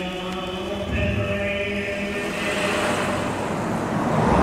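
Sustained choral voices holding chords in the film's score, with a rising whoosh building over the last second or so.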